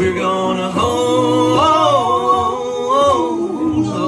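A man and a woman singing the long held closing note of a country duet chorus in harmony, over acoustic guitar and bass.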